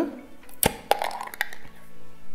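Screw-top lid of a jar of spread twisted open: one sharp crack about half a second in, then a few lighter clicks and a brief scrape as the lid comes free.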